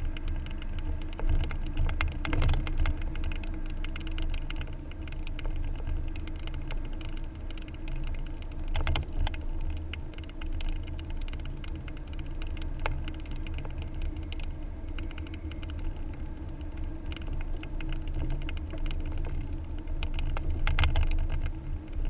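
Car driving at low speed, heard inside the cabin: a steady low rumble of road and engine with frequent small clicks and rattles throughout.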